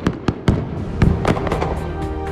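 Fireworks sound effect: a quick run of sharp bangs and crackles, with music coming in underneath and its held notes taking over near the end.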